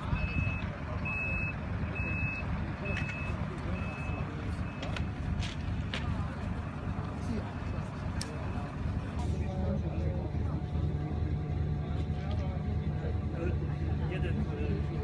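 A vehicle's reversing alarm beeping about once a second for the first four seconds, then stopping, over a steady low rumble.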